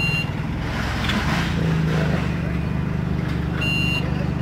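Vehicle reversing alarm beeping in short bursts over a steady low engine drone. The beeps sound right at the start and again near the end, with a gap of a few seconds between.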